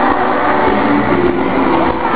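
Live pop-rock band music played loud at a concert, heard as a dense, overloaded wash of sound in an amateur camera recording, with voices bending in pitch over it.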